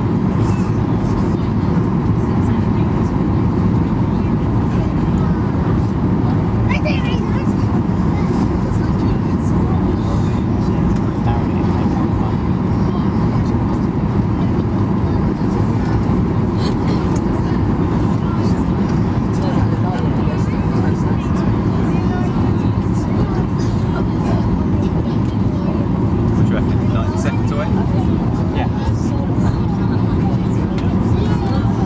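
Steady cabin noise of a jet airliner on its landing approach: the engines and airflow make an even, deep rumble inside the cabin. A faint steady tone runs under it, with occasional light clicks and rattles.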